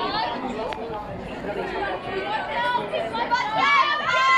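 Spectators at the track talking over one another in a steady chatter of several voices, which grows louder with calls near the end.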